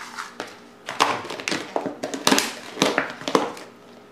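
Plastic food container being handled: a quick run of sharp clicks and knocks starting about a second in and lasting two seconds or so, as a fork is put in and the snap-on lid is fitted.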